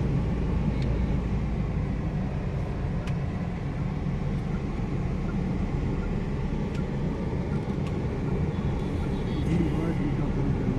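Inside the cabin of a moving Mahindra car: the engine and tyres make a steady low rumble on the road, with a few faint clicks.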